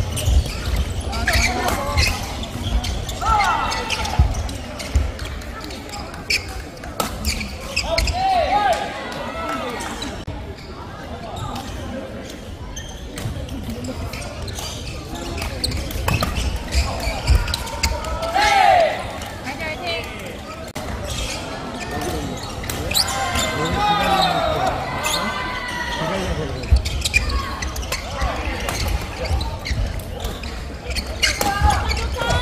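Badminton rallies in a sports hall: rackets strike the shuttlecock in sharp, irregularly spaced hits that ring in the hall, with voices now and then.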